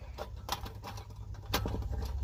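A few light metallic clicks and taps as the thin stainless-steel panels of a folding stick stove are handled and slotted together: one about half a second in and a small cluster near the end, over a low steady rumble.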